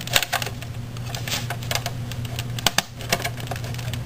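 Plastic clicks and taps from the Linksys WRT150N router's plastic base plate being pressed onto the case by hand, its clips catching and snapping in, with a quick cluster at the start and more scattered clicks about a second and a half and near three seconds in.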